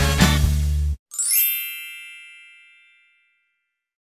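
Upbeat intro music with a steady beat cuts off about a second in, followed by a single bright chime that rings out and fades away over about two seconds.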